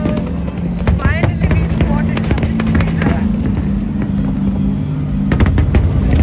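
Fireworks going off at a distance, scattered sharp bangs and crackle with a rapid cluster of bangs about five seconds in.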